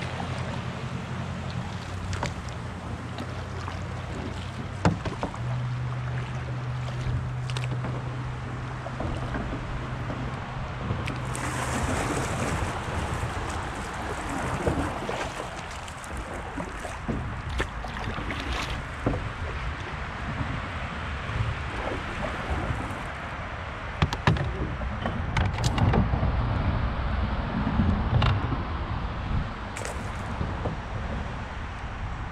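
Flood-high river water rushing and lapping around a canoe as it is paddled downstream, with a few sharp knocks. A steady low hum fills the first twelve seconds, loudest from about five seconds in.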